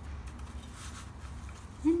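Faint rustling and crunching of breadcrumbs as a raw, egg-dipped fish fillet is pressed and turned in a stainless-steel bowl of crumbs by hand, over a low steady hum.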